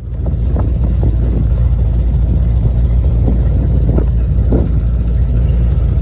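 Truck driving along a dirt track: a loud, steady low rumble of engine and road noise, with a few faint knocks over it.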